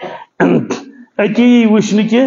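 A man clears his throat twice into a microphone, two short rough bursts, then goes back to speaking about a second in.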